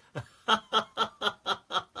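A man laughing: a run of short, evenly spaced bursts, about four a second, starting about half a second in.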